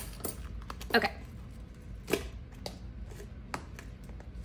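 A few scattered, sharp clicks of loose coins and a wallet being handled on a desk, as spilled change settles and is moved about.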